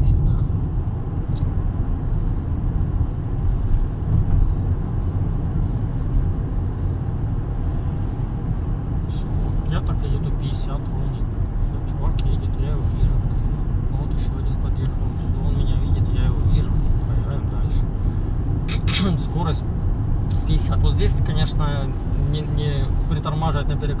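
Steady low road and engine rumble inside the cabin of a car driving along a city street.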